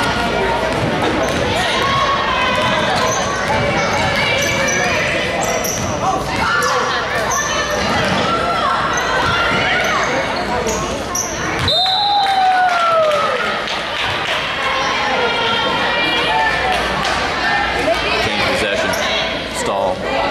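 A basketball dribbled and bouncing on a hardwood gym floor during a game, with spectators' chatter and shouts and short high squeaks throughout. About twelve seconds in comes a short, high whistle blast, followed by a falling shout from the stands.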